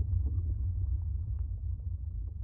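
A deep, steady rumble from a documentary trailer's soundtrack, slowly fading out as the trailer ends.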